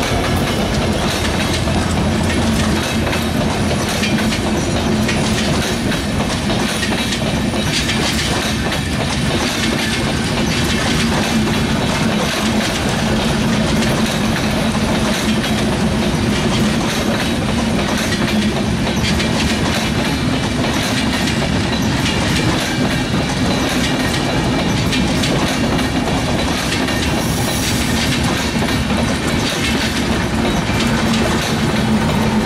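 Passenger train coaches rolling past close by without stopping: a loud, steady running noise of wheels on rail with the clickety-clack of wheels over the rail joints.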